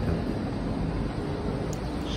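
Steady city street ambience: a low, even rumble of road traffic.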